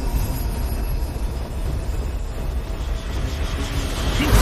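Animated fight sound effect of a magical energy blast grinding against a barrier: a steady heavy rumble with a hiss across the top, and no break or change.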